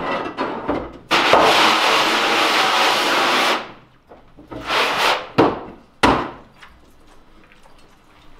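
Hand-held water spray gun hissing against a screen-printing screen's mesh, rinsing water-based ink out with plain water, in one long burst of about two and a half seconds and a shorter one after it. Then two sharp knocks about five and six seconds in.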